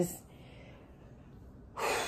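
A woman's long exhale blown out through pursed lips, starting suddenly near the end after a short pause and trailing off slowly: an exasperated sigh.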